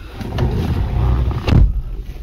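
Low rumbling handling noise as a hand rubs over a felt dashboard mat, with one sharp knock about one and a half seconds in.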